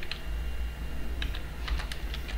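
Computer keyboard typing: a keystroke near the start, a short pause, then a quick run of keystrokes in the second half, over a low steady hum.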